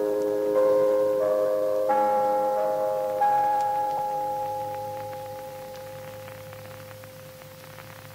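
Radio station interval signal of bell-like chime notes, as used by the Danish offshore station Radio Mercur. The notes enter one after another, ring on and pile into a chord, then fade slowly over several seconds.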